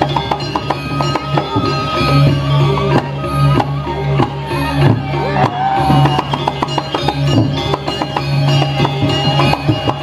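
Balinese gamelan accompanying a temple dance: dense, quick drum and cymbal strokes over a steady low gong tone, with a higher melody line that slides in pitch.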